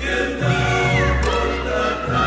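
Choral music: a group of voices singing over accompaniment with a steady low bass pulse.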